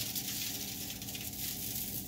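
Salt being sprinkled from a small hand-held container over food: a continuous dry, rattling hiss that eases off slightly near the end.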